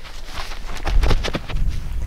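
Footsteps of a man sprinting away across a grass field: a run of quick, sharp footfalls, mostly in the second half, over a low rumble.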